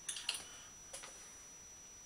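A few light clicks in quick succession, then one more about a second in, from handling the freshly painted crankbait on its holder. Between them, quiet room tone with a faint steady high whine.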